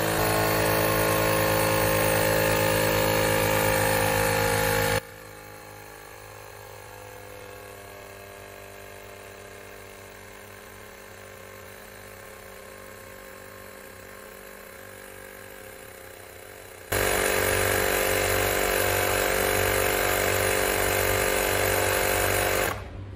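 GOOLOO GT150 portable tire inflator's compressor running steadily, pumping a low car tire up toward its 32 psi preset. The sound drops to a much quieter level from about five seconds in, then comes back at full level at about seventeen seconds.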